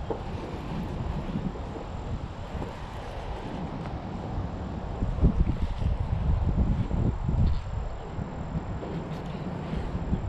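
Wind buffeting the microphone in gusts, a low rumble that swells strongest in the middle stretch.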